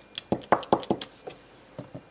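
Clear acrylic stamp block with a rubber oak-leaf stamp tapped down about seven times in quick succession, roughly five light hard clicks a second, as the stamp is dabbed against paper and the ink pad. Two fainter taps follow near the end.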